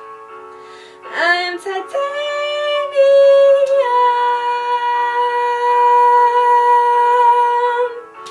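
A woman singing over a piano backing track: about a second in she scoops up into a note, then holds one long, loud belted vowel almost to the end, stepping down slightly in pitch about four seconds in.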